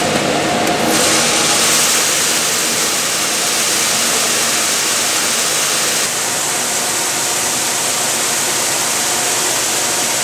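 Treated soybean seed pouring in a steady stream from a conveyor spout into an air seeder's tank, a dense rushing hiss that grows fuller about a second in, over a steady engine hum.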